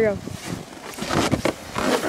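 Crunching and scraping in snow as a person steps onto a plastic sled and shifts on it, in short irregular strokes.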